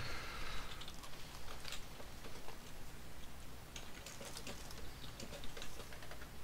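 Faint, scattered light clicks and taps over a low steady hum.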